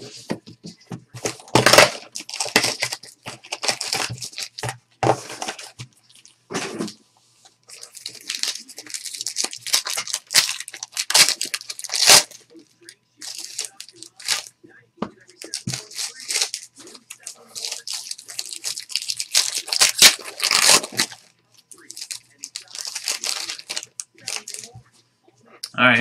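Plastic wrapping on a trading-card box and pack being torn and crinkled open, in irregular bursts of rustling with short pauses and a few sharp clicks.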